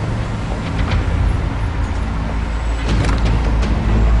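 A car engine running with a steady low rumble, with a few short sharp knocks over it, about a second in and again near the end.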